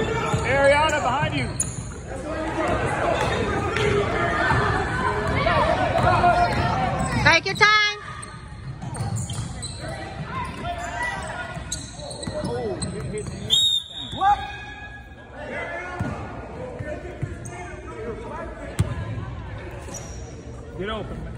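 Basketball game sounds in a gymnasium: a ball bouncing on the hardwood court amid indistinct shouting voices, echoing in the large hall.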